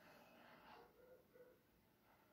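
Near silence: quiet room tone.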